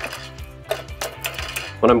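Split firewood logs being stacked in a wood-burning fireplace insert, knocking against each other and the firebox floor in several light clunks.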